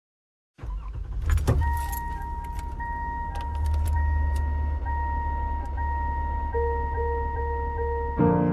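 Car sound effects over a low steady engine rumble: keys jangle about a second and a half in, and a car's warning chime pings repeatedly over a held high tone. A held musical note comes in about six and a half seconds in.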